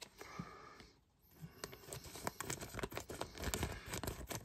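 Scissors snipping through a thin plastic bag, with the plastic crinkling as it is handled. The snips come as a run of small clicks from about a second and a half in.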